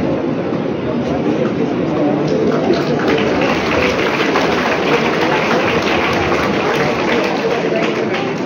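Chatter of a large crowd of students, many voices talking at once into a steady hubbub with no single voice standing out.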